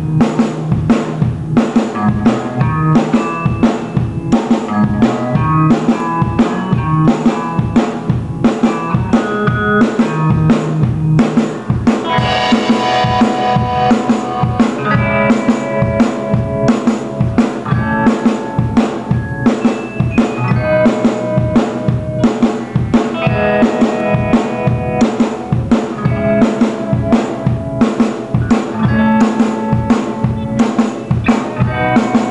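Live rock band playing: a drum kit keeping a steady beat under bass guitar and electric guitar. The texture gets brighter and fuller around the middle, then settles back into the groove.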